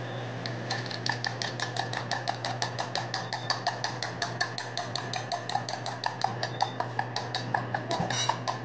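A metal spoon beating rapidly against a small stainless-steel bowl, about six ringing clinks a second, starting just under a second in. Under it runs the steady hum of a kitchen exhaust hood.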